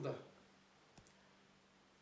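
A pause in a man's speech: the end of his word fades out right at the start, then near silence with a single faint click about a second in.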